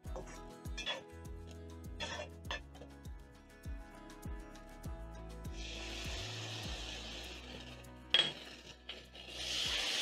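Background music over a wooden spoon clicking and scraping in a non-stick wok of frying onions. A hiss lasting about two seconds starts just past the middle as ketchup is squeezed into the hot pan, and another starts near the end as it is stirred in.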